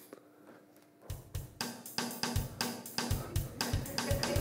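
A played-back funk drum-kit beat with kick drum, snare and hi-hat, a classic funk pattern with a little syncopation added, starting about a second in after a brief silence.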